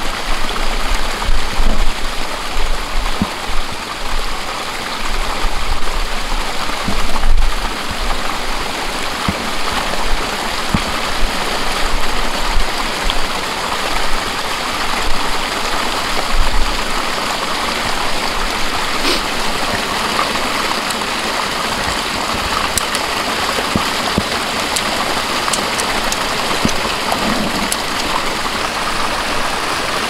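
Steady rushing of flowing water from a stream, with low rumbling bumps in the first half and a few faint clicks as a rope and prusik cord are handled at a pulley and karabiner.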